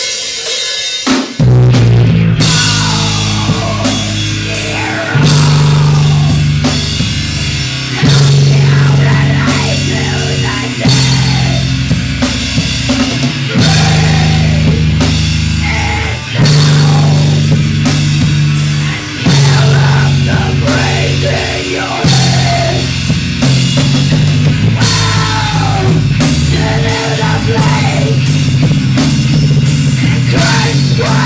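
Live rock band playing an instrumental heavy-metal passage on distorted electric guitars, bass and drum kit, kicking in suddenly about a second in.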